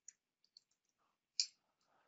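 A few faint, short clicks in a quiet pause, with a single louder, sharper click about one and a half seconds in.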